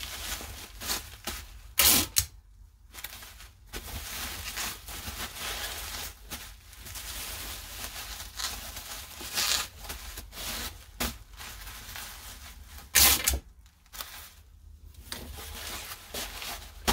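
Plastic bubble wrap crinkling and rustling in irregular handfuls as it is folded around a muffin pan, with two louder short rasps, one about two seconds in and one at about thirteen seconds.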